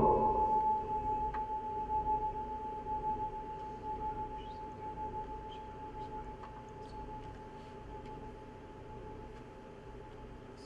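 A single struck, bell-like metal tone ringing out and slowly dying away over about eight seconds, its level wavering in a slow pulse as it fades.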